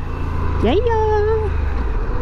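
Harley-Davidson Pan America's 1250 V-twin engine running with road and wind noise while the bike rides at low city speed: a steady low rumble.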